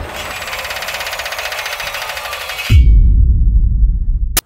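Electronic title-sequence music and sound design: a dense, fast-pulsing whirring texture for about two and a half seconds that cuts off abruptly, giving way to a loud deep bass rumble near the end.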